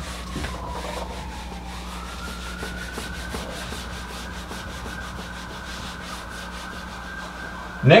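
Whiteboard eraser rubbing across a whiteboard in quick repeated wiping strokes. A faint thin tone runs underneath, dipping in pitch about two seconds in, then rising and holding steady.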